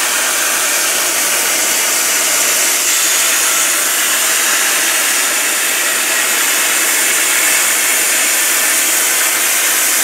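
CNC plasma cutter's torch cutting through metal plate, giving a steady, continuous hiss of arc and air.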